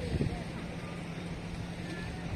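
Steady low drone of a boat engine, with faint voices over it.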